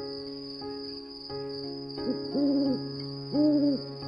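Soft lullaby-style music of held notes with a steady high chirring behind it, and two owl-like hooting calls, a little over two seconds in and about three and a half seconds in, the second the loudest.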